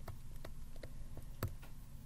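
Stylus pen tapping and ticking on a tablet screen while handwriting a word: a run of irregular light ticks, the loudest about one and a half seconds in.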